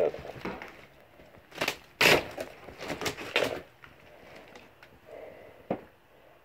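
Footsteps and scuffing on rotten wooden floorboards littered with plaster debris. There are a few crunching knocks of wood and debris underfoot about two and three seconds in, and one short sharp crack near the end.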